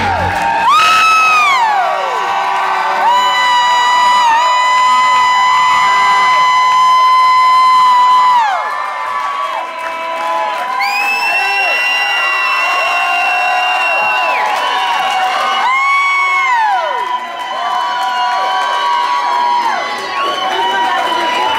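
Club audience cheering and whooping as a rock song's final chord cuts off, with long drawn-out whoops, some held steady for several seconds and some falling in pitch.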